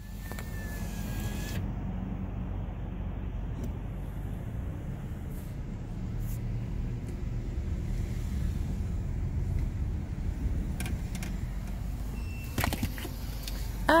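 Car running at low speed, heard from inside the cabin as a steady low engine-and-road rumble. A faint high tone sounds in the first second and a half, and a few short clicks come shortly before the end.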